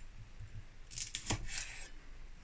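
Kitchen knife cutting through hogweed flower buds on a wooden chopping board: a faint crisp slicing, then a sharp knock of the blade on the board a little past halfway, with a lighter tap just after.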